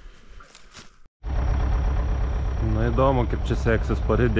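Belarus MTZ-82 tractor's four-cylinder diesel engine running steadily while pulling a loaded log trailer, cutting in abruptly after a short silence about a second in. From a little under three seconds a singing voice comes in over it.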